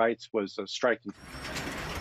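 A man's voice for the first second, then a steady hiss of background noise that grows louder from about a second in.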